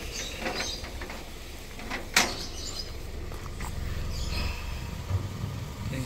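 A vehicle engine running low and steady, with a single sharp metallic clank about two seconds in and a few light rattles.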